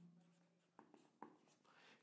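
Near silence with the faint sound of a marker writing on a whiteboard, including two light ticks about a second in.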